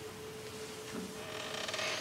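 Quiet room tone in a pause between speakers: a steady faint hum under a light hiss, with a soft rustling noise building near the end.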